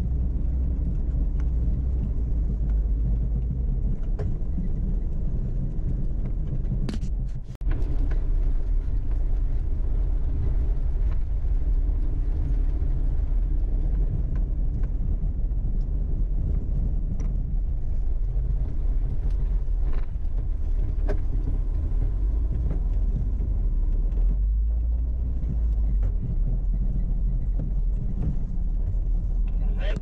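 Off-road 4x4 driving slowly along a rough dirt trail: a steady low engine and drivetrain rumble, with scattered knocks and rattles from the body and tyres over rocks. The sound briefly drops out about seven seconds in.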